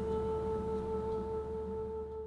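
Background music ending on a held, ringing chord of pure tones that slowly fades away.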